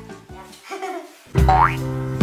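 Background music with an edited-in cartoon sound effect: a sudden quick rising whistle-like glide about one and a half seconds in, after which the music comes in louder with a steady bass.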